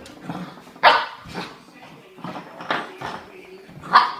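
Irish Setter puppy barking in short yaps while playing with an antler bone, a few separate yaps, the loudest about a second in and another near the end.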